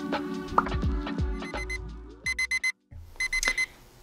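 Background music dying away, then an alarm clock beeping in two quick bursts of about four high-pitched beeps each, separated by a short gap.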